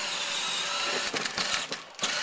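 Hard plastic wheels of a children's battery-powered ride-on car, their tread worn away, rolling and grinding over asphalt with a steady rough rattle and a few ticks, along with the car's small electric drive motor running.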